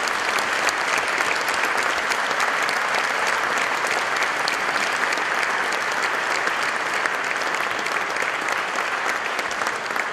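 Audience applause, a dense, steady clapping of many hands that holds at the same level throughout.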